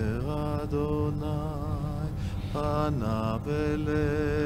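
A voice singing slow, chant-like phrases of long held notes with a wavering vibrato, breaking off briefly twice.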